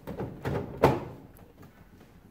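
Metal cover panel being fitted over the electrical box of a Samsung floor-standing air conditioner indoor unit: light handling knocks, then one sharp clunk a little under a second in as it is pressed into place.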